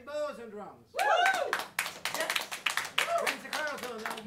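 Audience clapping, with several voices whooping and cheering on rising-and-falling calls, loudest from about a second in.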